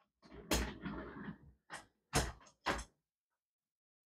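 Handling noise from a camera being picked up and turned around: rubbing and bumping with several dull knocks. The loudest knock comes about half a second in, and two more follow close together a little after two seconds.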